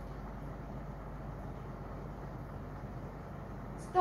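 Steady low background hum, then near the end a sharp clink of a hard object with a brief ringing tone.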